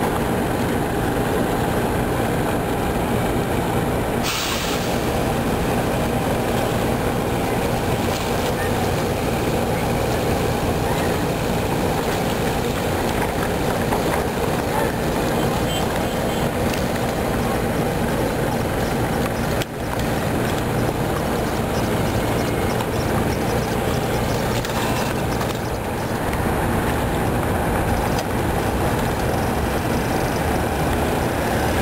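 A steady, loud engine rumble with a low hum, unbroken apart from a brief dip about twenty seconds in.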